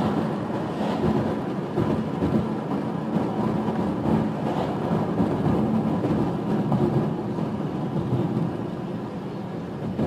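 Steady low rumble of a car driving at road speed, tyre and engine noise heard from inside the cabin.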